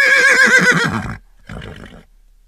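A horse whinnying: one loud, quavering neigh that falls in pitch and stops about a second in, followed by a shorter, lower sound near the end.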